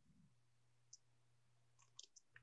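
Near silence: faint room tone with a low hum, and a few tiny clicks, one about a second in and a few more near the end.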